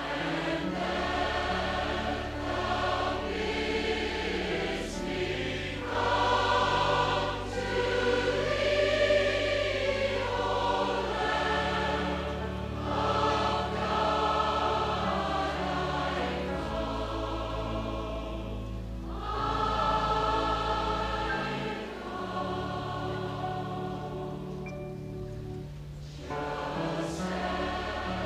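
A large choir singing a slow hymn in sustained chords, in long phrases with short breaks between them.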